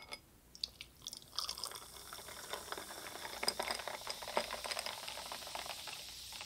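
Dark soda poured into a glass of ice cubes, beginning about a second and a half in after a few small clicks, with a steady fizzing hiss and fine crackle of carbonation.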